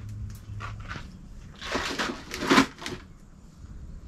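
Clattering and rustling of hardware and plastic tubs being handled and sorted on shelves, with a few light clicks and then two louder bursts of handling noise, the second the loudest, about two and a half seconds in.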